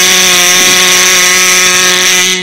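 Buzzer sound effect: one long, flat, loud electric buzz at a steady pitch.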